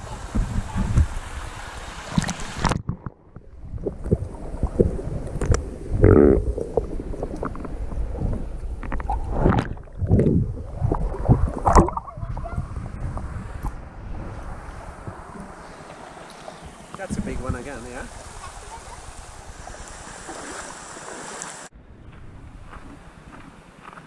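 River water sloshing and splashing against a camera held at the surface, with muffled thumps and gurgles as it dips in and out. It goes quieter near the end.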